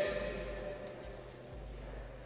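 Background noise of a large indoor athletics hall: a steady low rumble under a faint reverberant haze, with the echo of a voice dying away at the start.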